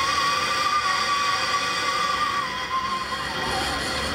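Zip line trolley rolling down its cable with a steady high-pitched whine, the pitch dropping in the last second as the rider slows toward the water.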